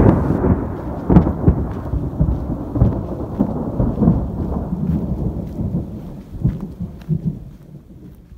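Rolling thunder: a loud, deep rumble that breaks in suddenly, crackles and surges for several seconds, then slowly dies away near the end.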